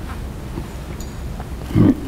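Steady low hum, then near the end a single short, loud, gruff vocal sound from a man, like a throat-clear or grunt.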